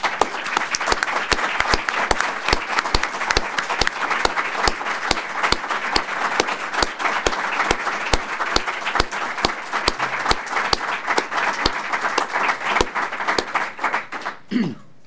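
Audience applauding, steady and sustained, with single louder claps standing out from the mass of clapping.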